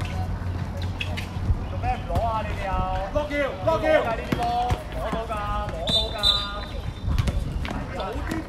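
Voices calling and shouting across an outdoor basketball court during play, with the short thuds of a basketball bouncing.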